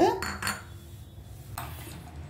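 A metal spoon clinking twice against a glass bowl, then a short scrape near the end.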